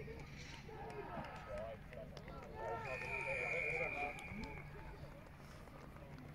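Distant shouts and calls of rugby players across the pitch, faint and overlapping. About three seconds in, a steady whistle-like tone sounds for just over a second.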